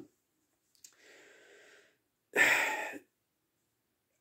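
A man breathing in a pause between sentences: a faint breath about a second in, then a louder, short breath through the nose or mouth about two and a half seconds in.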